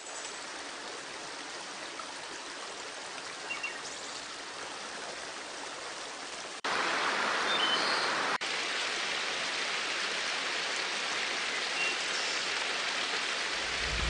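A shallow river running over rocks: a steady rush of flowing water. It drops out briefly about six and a half seconds in and comes back louder, with a second short break about two seconds later.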